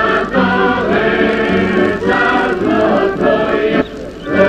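A choir singing in held phrases over a steady low note, with short breaks between phrases and a brief drop just before the end.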